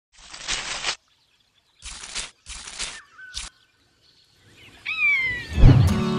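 Sound effects for an animated intro: four short swishes of noise over the first three and a half seconds, then a falling, whistle-like glide ending in a loud low thump near the end.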